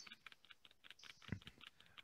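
Faint, irregular clicking of computer keyboard keys.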